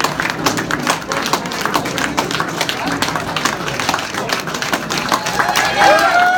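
Audience applauding, with many individual claps over crowd voices and chatter. Near the end a held pitched note begins.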